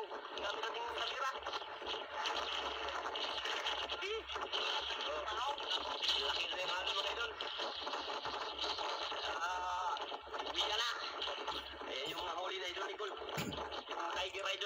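Indistinct talking that runs on throughout, with a thin, radio-like sound.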